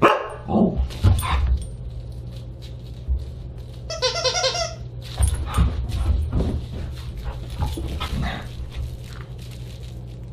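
Siberian husky giving short barks and yips while playing with a plush toy, with a longer pulsing call about four seconds in. Low thuds of paws and the toy hitting the floor come between the calls.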